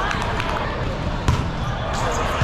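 Busy volleyball hall: a steady hubbub of voices with repeated thumps of volleyballs being hit and bouncing on the floor; one sharp ball thump about a second in stands out as the loudest.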